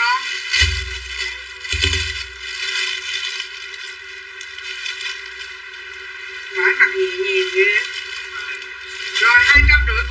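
Talking voices with a few dull low thumps: one about half a second in, one near two seconds and one just before the end.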